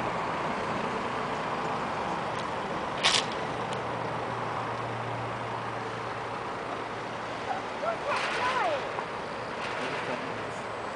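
Jet engine noise of an Airbus A321-231 with IAE V2500 engines climbing away after take-off: a steady rushing noise that fades slowly as it recedes. There is a sharp click about three seconds in.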